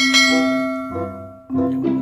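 Background music with bell-like chiming notes over a steady low tone. One bright note strikes at the start and another about one and a half seconds in, each ringing down.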